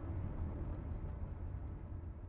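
Inside a car driving on a gravel road: a steady low rumble of engine and tyres.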